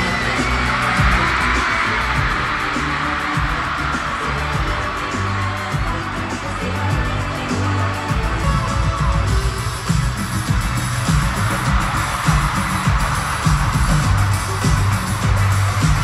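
Live pop band playing in an arena with a steady low beat, under an arena crowd screaming and cheering. The crowd is loudest in the first few seconds and again near the end.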